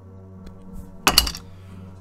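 A short, sharp clack about a second in from flush-cut nippers at work on plastic kit parts, over steady background music.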